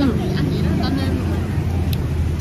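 A motor vehicle engine running, a steady low drone, under a short spoken "ừ" and faint background voices.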